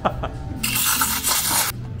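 Espresso machine steam wand hissing loudly for about a second, then cutting off sharply.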